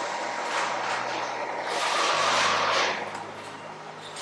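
A heavy diesel vehicle's engine running with a steady low hum, under a loud rushing hiss that swells about two seconds in and eases off near the end.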